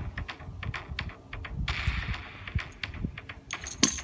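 Light, irregular clicks and taps from a wooden-shafted spear and footwork during a spear form on a concrete path, with a sharper knock near the end as the spear is brought upright.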